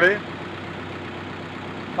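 Bus engine running steadily, heard from inside the passenger cabin as an even low hum.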